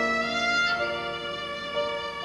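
Instrumental interlude in a hymn: a bowed string instrument, violin-like, plays a slow melody of held notes over accompaniment, with the note changing about once a second.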